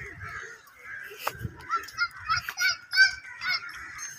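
Birds calling: a run of about seven short, sharp calls from about a second in to near the end, over a steady background of bird chatter.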